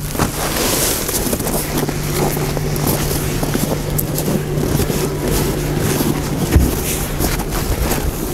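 Outdoor wind buffeting the microphone, with a steady low hum underneath that stops about six and a half seconds in, and footsteps in snow as the camera is carried around the car.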